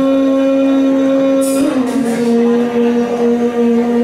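Yamaha electronic keyboard playing a slow melody: one long held note that slides down to a lower held note about halfway through, with a light percussion accent from the accompaniment.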